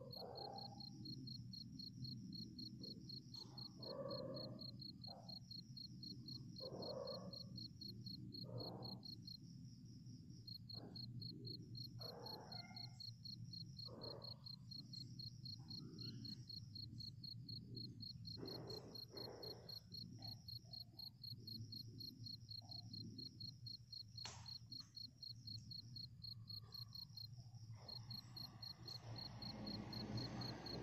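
Faint crickets chirping steadily, a rapid even pulse of high trills that pauses briefly now and then, over a low steady hum. Short soft sounds come and go every few seconds.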